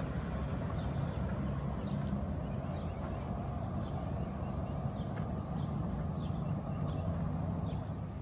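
Steady low rumble of an electric bike's tyres rolling across a wooden plank bridge deck, with faint short bird chirps now and then.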